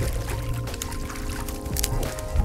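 Background music with held tones and a steady bass, over water splashing as a landing net scoops a hooked fish out beside the boat.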